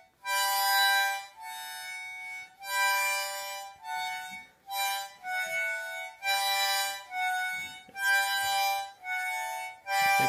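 Harmonica played by a toddler: a string of short chords, each held about half a second to a second with brief gaps between, going back and forth between two chords.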